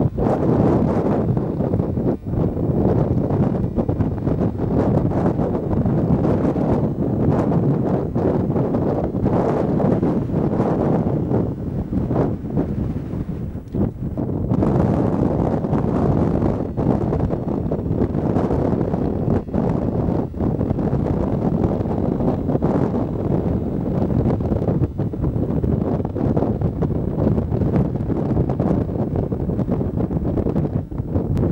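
Strong wind buffeting the microphone: a steady low rumbling rush that gusts and eases, dropping briefly about halfway through.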